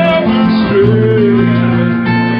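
Live band music led by strummed acoustic guitar, with a single wavering held note near the middle.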